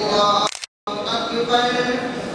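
A man's voice reciting in a chanted, sung melody with long held notes. The audio cuts out completely for about a fifth of a second just after the half-second mark.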